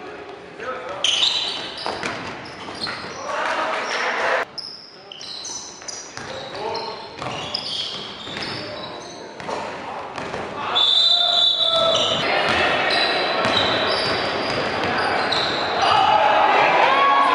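Live game sound in an echoing indoor basketball gym: players' voices calling out over the ball bouncing on the hardwood floor. It grows louder and busier about two-thirds of the way through.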